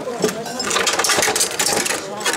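A rapid, irregular clatter of sharp wooden knocks as a mikoshi's wooden carrying poles are set down and shifted on wooden stands, with men's voices underneath. The clatter thickens about half a second in.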